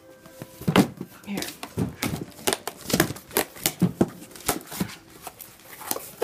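Wrapping paper and cardboard rustling, crinkling and tearing as presents are unwrapped: a quick, irregular run of sharp crackles.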